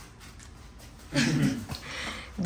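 A dog gives one short vocal sound about a second in, after a quiet first second.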